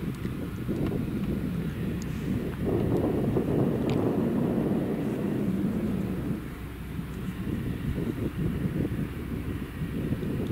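Grimme Varitron 470 Terra Trac self-propelled potato harvester at work, lifting potatoes: a steady low rumble of its engine and running gear that grows louder for a few seconds in the middle.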